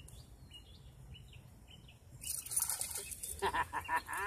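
Small dog splashing in shallow pond water as it lunges at a fishing lure, starting about halfway through, with a man laughing over it. Faint bird chirps before.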